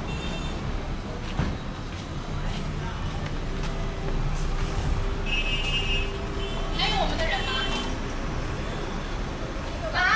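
Street ambience: road traffic running past, with people talking nearby. There is a steady hum from a vehicle in the middle of the stretch.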